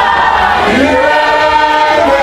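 A congregation singing a Shona hymn together, many voices holding one steady note through the second half.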